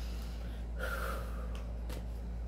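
A person taking one audible breath, a short noisy rush about a second in, to decompress. A steady low hum runs underneath.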